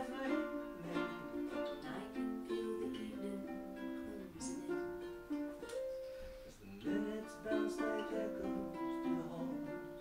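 Two ukuleles playing an instrumental passage together: a run of plucked melody notes over chords, each note ringing briefly and fading.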